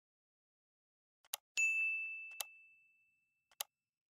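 Subscribe-animation sound effects: a short click, then a single bright bell ding that rings out and fades over about two seconds, with two more short clicks, one during the ding and one near the end.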